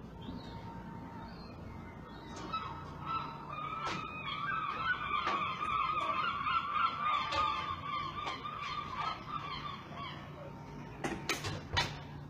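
Birds calling with repeated honking calls, overlapping for several seconds from about two and a half seconds in. A few sharp knocks near the end.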